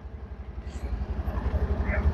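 Honda Activa 125 scooter's single-cylinder engine running as the scooter pulls away, a low rumble that grows steadily louder through the two seconds.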